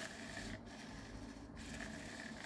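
Small hobby servo motors whirring faintly and steadily as they move the wings of an animatronic skeleton bird prop.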